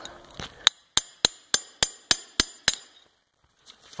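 A hammer striking a fresh aluminium casting and its plaster mold, about eight quick blows at roughly three a second, each with a short, high metallic ring, knocking the plaster investment off the part.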